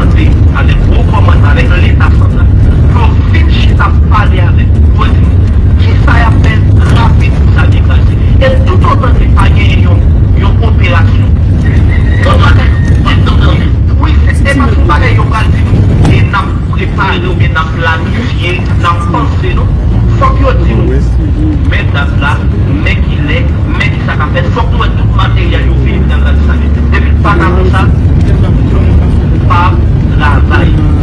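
Voices talking over a loud, steady low rumble, with the sound changing abruptly about sixteen seconds in.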